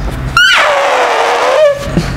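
A man imitating a sound effect with his mouth and voice: a quick wavering glide, then one long breathy held tone that dips in pitch and rises again before cutting off.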